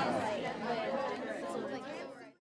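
Many people talking at once in a room, a hubbub of overlapping voices with no single speaker standing out, fading toward the end.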